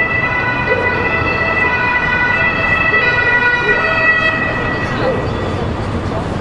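A steady high-pitched tone with overtones, held without changing pitch and cutting off about five seconds in, over steady street noise.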